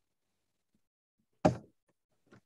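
A single sharp thump about one and a half seconds in, dying away quickly.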